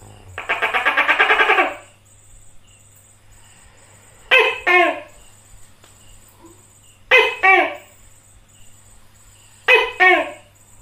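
Tokay gecko (tokek) calling: a rapid rattle lasting about a second and a half, then a series of two-syllable "to-kek" calls, each syllable falling in pitch, repeated about every three seconds, three times.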